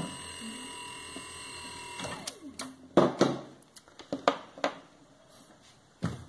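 Steady electrical whine from a Samsung inverter air-conditioner board and the compressor it drives, which cuts off about two seconds in when the unit is unplugged, its pitch falling away as it stops. A few sharp clicks and knocks follow from the plug being handled.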